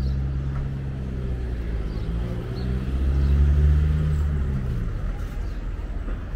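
A motor vehicle's engine running at low revs as it passes close by, growing louder to a peak about three and a half seconds in, then fading.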